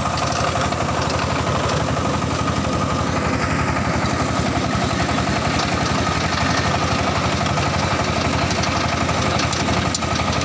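Small clay wire-cut brick machine running as it extrudes a column of clay, a steady mechanical drone with a fast, even pulse.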